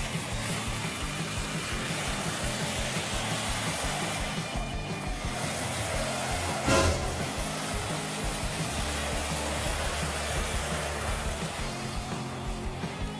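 Background music over the noise of an SUV driving on a snowy, icy slope, with a short loud burst about seven seconds in.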